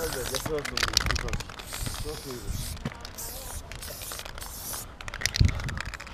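Aerosol spray paint can hissing in short on-and-off bursts as paint is sprayed onto a concrete wall. There is a dull thump near the end.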